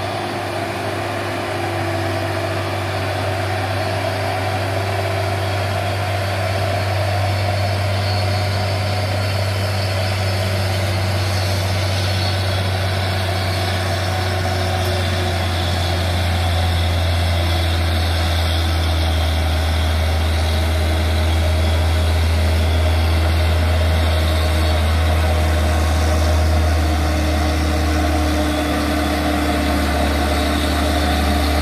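Heavy diesel truck engine running at low revs, a steady low drone that grows slowly louder as the truck nears.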